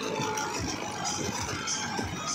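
Tractor engine running under load, driving a soil-loading elevator through its PTO shaft, with soil and clods pouring and rattling into a steel trolley.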